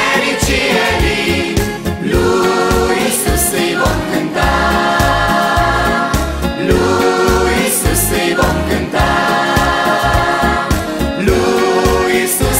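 Children's choir singing a Christian song over a backing track with a steady bass beat.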